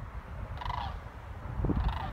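Two calls from large birds flying overhead, one a little after half a second in and one near the end, over a low rumble of wind on the microphone.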